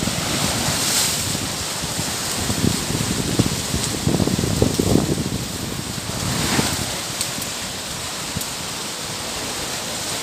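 Wind rushing over the microphone in gusts, with a steady hiss behind it; the low rumbling buffeting is strongest about four to five seconds in, then eases.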